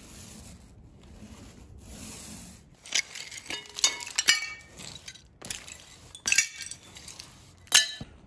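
A paint roller rolling over a board for the first few seconds, then pieces of glass clinking and tinkling in a string of sharp strikes with short ringing, loudest about halfway through and again near the end.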